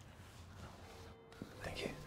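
A faint whispered voice, a short breathy sound near the end, over quiet room tone.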